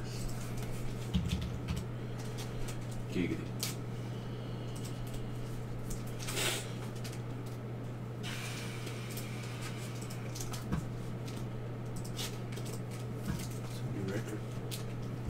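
Steady low electrical hum with scattered small clicks and knocks, a brief rustle about six and a half seconds in, and a short hiss a couple of seconds later.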